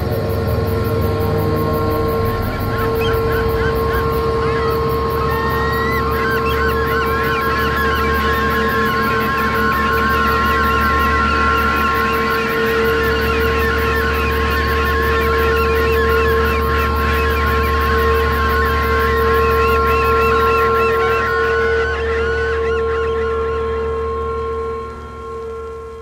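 Eerie trailer soundtrack: a steady drone of held tones, with a dense layer of quick warbling, chattering pitch glides above it for most of its length, fading out at the end.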